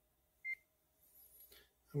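Neoden YY1 pick-and-place machine's touchscreen giving one short, high beep as a key on its numeric keypad is pressed, about half a second in.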